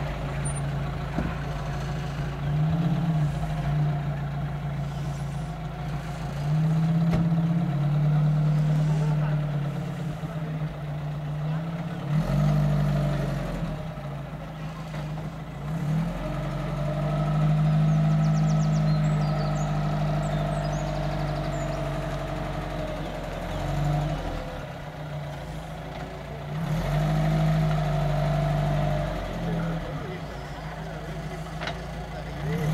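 Vintage saloon car engine running at low speed while the car manoeuvres, its revs rising and falling again several times.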